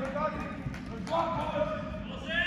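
Voices calling and shouting across a large, echoing indoor sports hall, with scattered thuds and knocks of play on the pitch.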